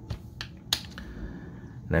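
Clear plastic coin capsules clicking as they are handled and picked up: two sharp clicks, the second louder.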